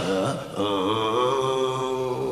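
A man's voice drawn out in a long, chant-like cry: a short gliding sound, then one held note from about half a second in to the end.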